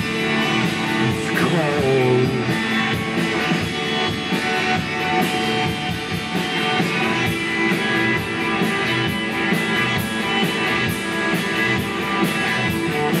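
Live rock band playing: electric guitar over drums keeping a steady beat, with a short sung line near the start.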